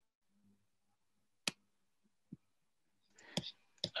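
A few sharp single computer mouse clicks over near silence, one about a second and a half in, another just after two seconds and a pair near the end, with a short rustle between them: the clicks of closing a screen share.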